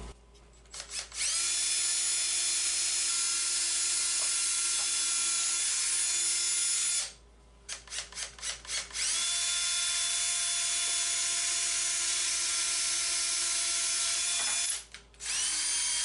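Cordless drill boring holes in wooden easel legs: a few short trigger blips, then the motor spins up and runs steadily for about six seconds. After a short silence it blips again and drills a second hole for about six seconds, starting up once more just before the end.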